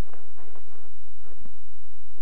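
A steady low hum under a pause in the talk, with a few faint, short clicks and ticks scattered through it.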